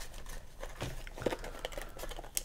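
Cardboard box being handled and its end flap worked open by fingers: light scraping with several small taps and clicks.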